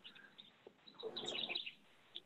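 Faint bird chirps in the background: a few short high calls, mostly about a second in.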